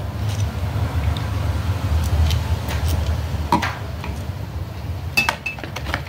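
Screwdriver working a small screw out of a VW Beetle carburetor's top cover: scattered light metal clicks and taps over a steady low hum, with two short ringing clinks near the end as the screw goes into a plastic parts tub.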